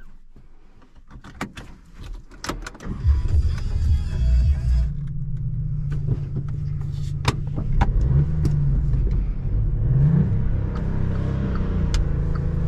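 A few clicks, then the Volkswagen up! GTI's 1.0 TSI three-cylinder petrol engine is cranked and fires about three seconds in, heard from inside the cabin. It settles into a steady idle, with a short rise in revs near ten seconds.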